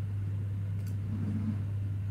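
A steady low hum, with a faint brief low sound about a second in.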